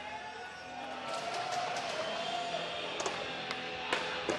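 Background music and crowd noise, with a skateboard rolling and clacking several times, the sharpest clacks about three and four seconds in.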